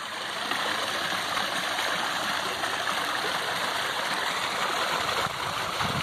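A steady rushing noise of moving water, even and unbroken.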